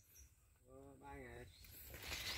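Near silence, with one short, faint, distant reply from a man ("ừ") about a second in.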